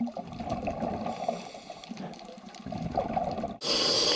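Water gurgling and bubbling, uneven and noisy, broken by a brief dropout and then a louder hiss near the end.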